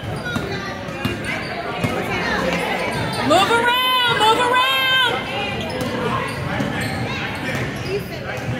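Basketballs bouncing on a hardwood gym floor during a youth game, with voices in a large reverberant gym. Two loud high-pitched squeals come about three and a half and four and a half seconds in.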